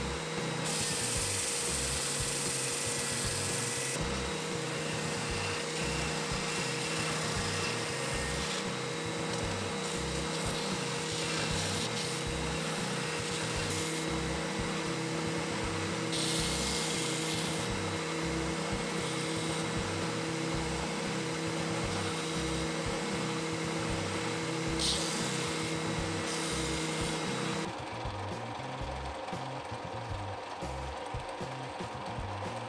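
Benchtop belt sander running with a steady motor hum, louder and rasping whenever the wood-and-epoxy pendant blank is pressed against the belt, about a second in, again around 16 s and briefly near 25 s. The sander sound stops near the end.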